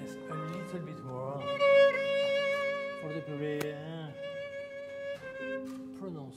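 Two violas bowing a slow, sustained melody together, the notes held with vibrato and swelling loudest about two seconds in.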